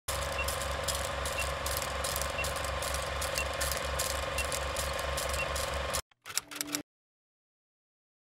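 Film-leader countdown sound effect: a movie projector's rapid mechanical clatter and hum, with a short high beep once a second. It cuts off after about six seconds, and a brief final burst follows.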